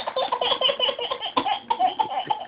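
A baby laughing in a quick run of high, pitched giggles, with a brief catch of breath a little over halfway through before the laughing goes on.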